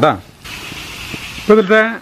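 Beef and onions frying in a pan: about a second of steady sizzling between two short bursts of speech, as the fry is stirred with a wooden spatula.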